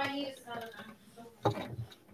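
Quiet off-mic voice and small kitchen noises, with a sharp click about one and a half seconds in; the sounds are taken for a knife scraping butter onto toast.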